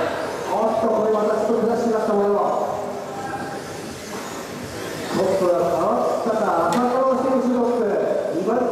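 A man talking steadily, in the manner of live race commentary, with a quieter lull in the middle and a single faint click shortly before the end.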